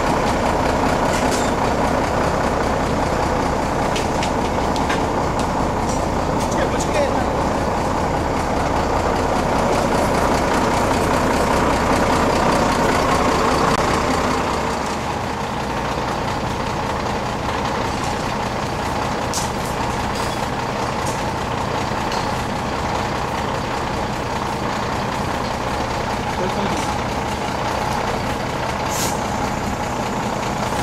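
Fire truck's diesel engine running steadily, louder for the first half, then settling into an even idle hum, with a few light knocks and faint voices.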